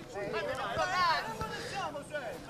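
Several distant voices shouting and calling at once, from players and onlookers at a five-a-side football match.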